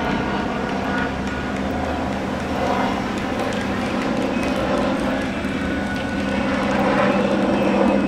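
Helicopter flying overhead: a steady, even drone that grows a little louder near the end.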